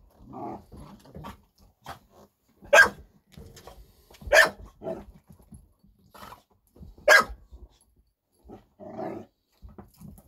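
Pit bulls barking, three sharp barks a couple of seconds apart, with lower growling in between: dogs squabbling over food.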